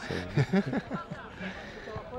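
Faint people's voices talking in the background, no words clear, quieter than the commentary around them.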